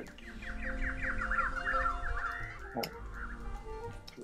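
A songbird singing a fast trill of short, arcing chirps for about three seconds, over sustained harp notes. This is a recorded harp-and-birdsong piece.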